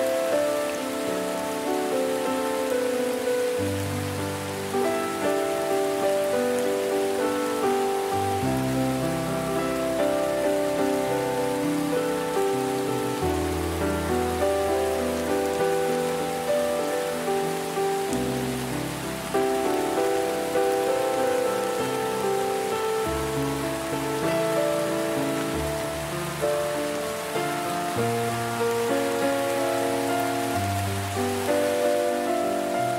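Steady rain falling, mixed with slow, calm music: held notes over a bass that changes every few seconds.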